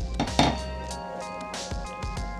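Brief clinks of a saucepan and its glass lid, a quick cluster just under half a second in, over steady background music.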